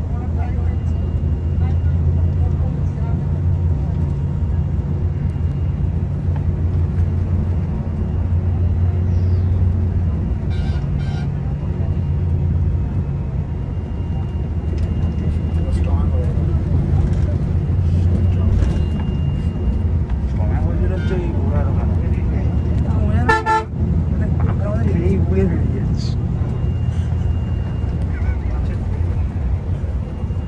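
Volvo multi-axle coach's engine running steadily at cruising speed, heard inside the driver's cab as a loud low drone. A horn toots briefly about ten seconds in and again, more strongly, at about 23 seconds.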